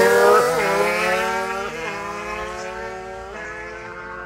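Simson two-stroke mopeds accelerating hard away in a sprint race. The engine note climbs and drops sharply three times as they shift up through the gears, and it fades as the bikes pull away.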